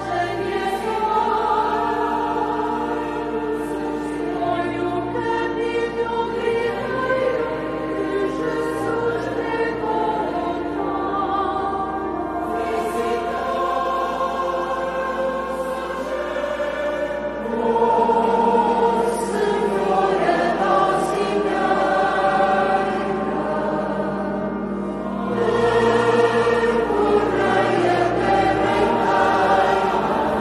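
A choir singing slow sacred music in long, held chords. It grows louder a little past halfway and again near the end.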